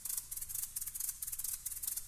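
A pair of Venezuelan maracas played solo in a fast, dense run of shaken strokes, with no other instruments sounding.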